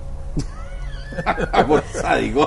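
Men laughing at a joke's punchline: a thin high vocal sound, then bursts of laughter from about a second in.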